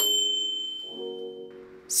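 A bright chime sound effect strikes once and rings out, fading over about a second and a half, with soft background music chords coming in under it about a second in.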